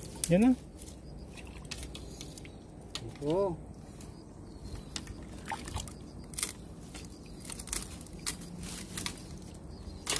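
Dry twigs and leaves crackling and snapping in scattered clicks as a person pulls at a brush pile at the water's edge, with two short wordless voice sounds, one at the start and one about three seconds in.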